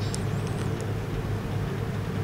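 Steady low hum of a hall's room tone picked up through the speaker's microphone and PA, with faint hiss and a few tiny faint ticks in the first second.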